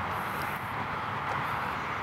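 Steady outdoor background noise, an even hiss, with two brief faint high hisses, one near the start and one about halfway through.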